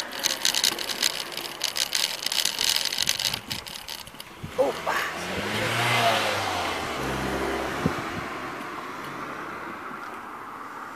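A car driving past, its engine and tyre noise swelling to a peak about six seconds in, its pitch falling as it goes by, then fading. Before it, a dense rapid rattle of clicks for the first three seconds or so.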